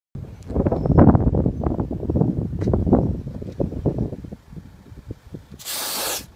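Loud rumbling and crackling wind and handling noise on the phone's microphone for about four seconds. Near the end comes a short hissing burst from an aerosol can of bug spray.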